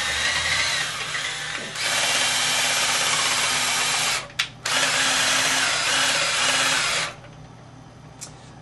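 Electric drill spinning a stirring wand in a carboy of wine, degassing it by vigorous stirring to drive off dissolved CO2. It runs, cuts out briefly about four seconds in, runs again, and stops about a second before the end.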